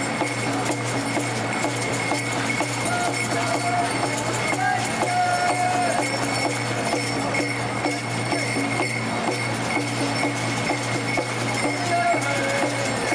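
Smoke Dance song: a voice singing short phrases over a fast, driving percussion beat that keeps up steadily, accompanying the dancers.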